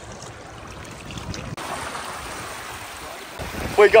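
Seawater washing over reef rock and surging in and out of a hole in the rock, a steady rushing noise that grows a little louder about one and a half seconds in.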